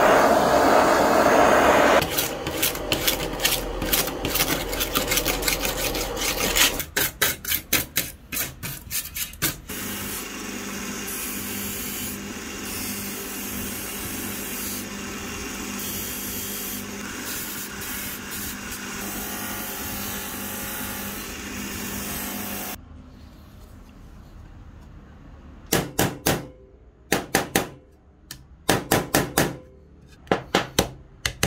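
A small torch hisses over a rusty metal license plate for about two seconds, followed by rapid rubbing strokes of a hand tool on the plate. A bench-mounted cloth buffing wheel then runs steadily with a low hum while it polishes the plate. Near the end come short bursts of quick hammer taps on the metal.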